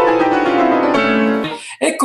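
Grand piano played fast: a rapid cascade of notes falling in pitch, which settles onto lower notes about halfway through and then breaks off abruptly near the end.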